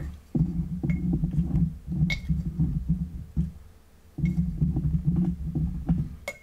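A dog gnawing on a camera tripod leg. The chewing travels up the tripod into the camera as irregular low rumbling in three bouts, with a few faint clicks.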